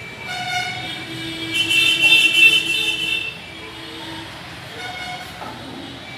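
A horn sounding in a series of toots with a steady pitch. The longest and loudest blast runs for nearly two seconds, starting about a second and a half in, and shorter, fainter toots come before and after it.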